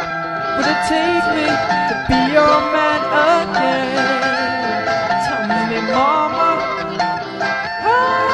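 Music: a guitar playing a winding melody with bent, sliding notes, with no sung words.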